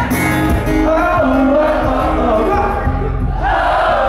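Live acoustic band: strummed acoustic guitar, electric guitar and cajon with a male lead vocal. Near the end a crowd of voices joins in, singing or shouting along.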